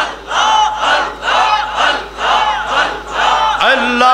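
A congregation chanting dhikr together, repeating a short call of 'Allah' in a steady rhythm of about two calls a second.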